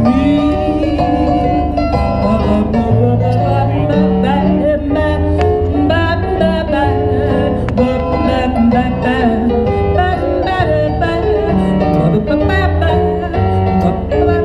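Live blues music from a duo played through a stage PA: an instrumental passage with a bass line stepping from note to note under pitched melodic lines.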